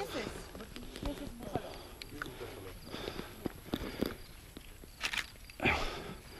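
Footsteps walking through grass, with faint voices in the distance.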